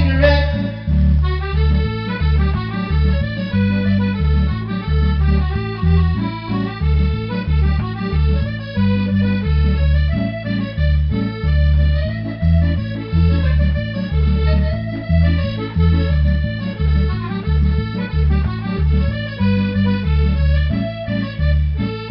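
Piano accordion playing an instrumental break in an Irish folk song: a melody on the keyboard over a steady, evenly pulsing bass-and-chord accompaniment from the bass buttons.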